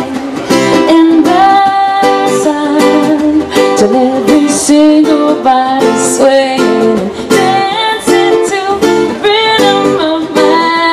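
Acoustic guitar and ukulele strummed together in a reggae rhythm, with singing over them.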